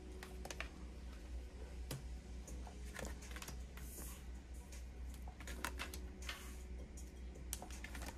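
Tarot cards being drawn from a deck and laid down on a tabletop: faint scattered clicks and taps, with a few brief sliding swishes.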